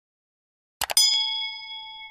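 Sound effects from a subscribe-button animation: two quick clicks just before a second in, then a bright bell ding that rings on and slowly fades.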